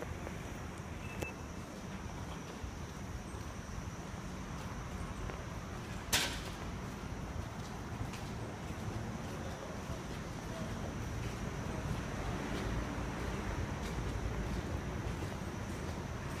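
Open-air railway platform ambience: a steady low background rumble with a faint high steady tone, getting slightly louder in the last few seconds. One sharp click about six seconds in.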